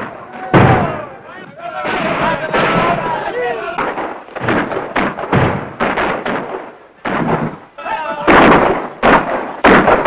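Loud bangs on a heavy wooden door: one about half a second in and two more near the end, with voices between them.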